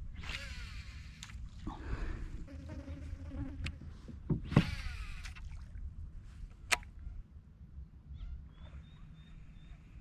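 Fishing rod and spinning reel being cast and wound in from a kayak: two whirring sweeps and a few sharp clicks, then a thin steady whine near the end as the reel is wound in. A low rumble runs underneath.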